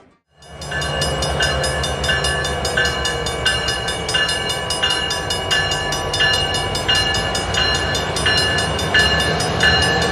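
A diesel freight locomotive runs toward a level crossing with a steady low engine rumble, starting about half a second in. A crossing bell rings about twice a second over it.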